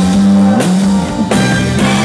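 Live band playing an upbeat Brazilian samba-soul tune, with a moving bass line under drum kit and conga hits.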